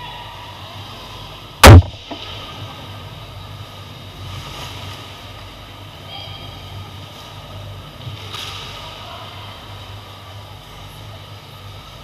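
One very loud, sharp crack a little under two seconds in, a hockey puck struck hard close to the microphone. A steady low rink hum with faint skate and stick noise runs under it.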